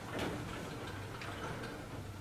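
A few light, irregularly spaced taps and clicks of a pen or chalk writing on a board, over a low steady hum in the room.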